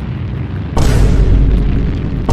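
Rocket-engine liftoff sound effect: a low rumble that turns, about three quarters of a second in, into a sudden much louder blast with a deep boom underneath.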